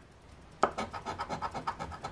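A coin scraping the coating off a scratch-off lottery ticket in quick, rapid strokes, starting about half a second in.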